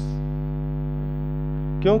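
Steady electrical mains hum, one constant buzzing tone with a stack of even overtones. A voice starts speaking near the end.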